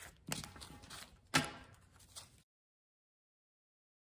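Stack of paper one-dollar bills handled and gathered by hand, with two sharp knocks, the second louder, about a third of a second and a second and a half in. The sound then cuts out to dead silence a little under halfway through.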